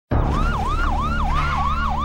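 Police siren in a fast yelp, its pitch rising and falling about three times a second, starting suddenly just after the start over a steady low rumble.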